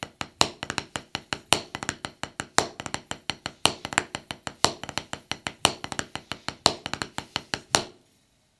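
Drumsticks on a rubber practice pad laid over a snare drum, playing the drag paradiddle #1 rudiment. Repeating groups of quick taps each open with a loud accented stroke, about one a second, with drag grace notes tucked in before the main strokes.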